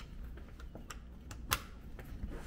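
A balcony door's handle and latch being worked to open it: a run of small clicks and knocks, with one sharper click about one and a half seconds in.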